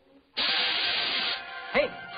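Cartoon steam locomotive letting off a hiss of steam: a sudden loud hiss a moment in, lasting about a second and then dying down, with music underneath.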